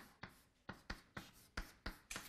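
Faint sound of an equation being written out by hand: a quick, uneven series of about seven short strokes.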